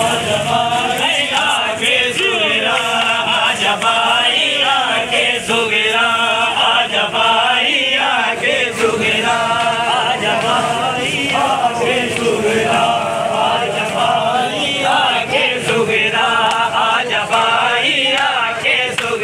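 Crowd of men chanting a noha together, a mourning lament sung in unison, with sharp hand slaps of matam (chest-beating) mixed in.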